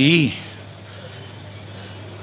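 A man's voice finishing a spoken word in Tamil just after the start, then a pause holding only a steady low background hum.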